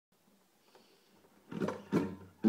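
Near silence, then from about one and a half seconds in, handling noise and a knock as a hand brushes the strings and body of a nylon-string classical guitar just before strumming.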